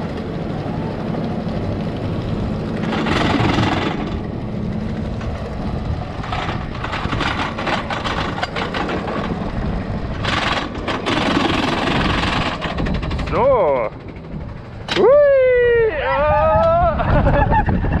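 Wild mouse roller coaster car climbing its lift hill with a steady mechanical rattle and a run of clicks as it nears the top. Near the end the car is on the course and the riders whoop twice, with calls that slide up and down in pitch.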